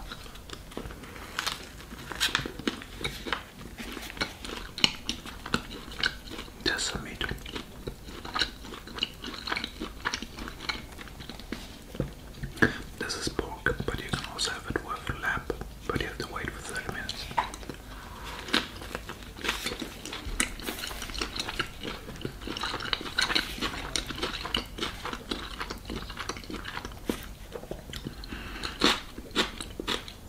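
Close-miked chewing and biting of a pork shashlik wrapped in flatbread: wet mouth sounds and irregular clicks as the meat and bread are chewed.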